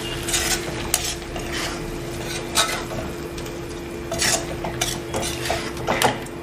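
A spatula stirs and scrapes chicken pieces in a pan in irregular strokes, about once a second, as they dry-roast in ghee with a light sizzle. A steady hum runs underneath.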